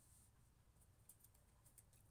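Near silence, with a few faint ticks of tarot cards being drawn from the deck and laid down on the table.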